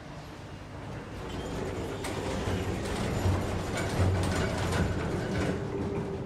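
ThyssenKrupp passenger lift car travelling down a floor: a low hum and rumble that builds up over the first couple of seconds as the car gets moving, then runs steadily with a few light knocks.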